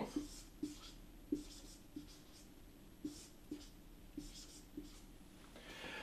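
Marker pen writing on a whiteboard: a string of short, faint strokes with small pauses between them as letters and arrows are drawn.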